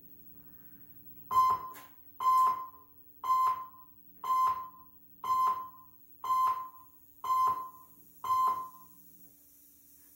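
Electronic countdown beeps from a video intro: eight identical short tones, one a second, each fading quickly, over a faint steady low hum.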